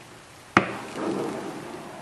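A single sharp knock about half a second in, followed by a soft squelching wash as a wooden paddle punches the cap of grape skins down into fermenting Merlot juice. This is the punch-down step of red-wine fermentation, which keeps the skins moist.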